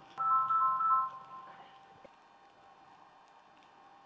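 A short electronic chime of a few held notes, fading out by about a second and a half in, followed by near silence with a faint tap about two seconds in.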